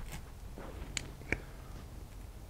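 A metal scraper chipping and scraping excess cured rigid foam off the back of a cast in a silicone mold: a few short sharp scrapes and ticks, the clearest about a second in and again a moment after.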